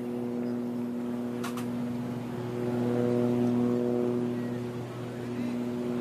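A steady, low droning hum, typical of a distant engine, runs throughout and swells a little in the middle. About a second and a half in, a single sharp click: a putter striking a golf ball.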